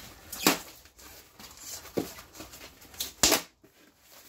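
Cardboard box and its paper packing being handled: a handful of short, sharp rustles and crinkles, the loudest about half a second in and again near the end.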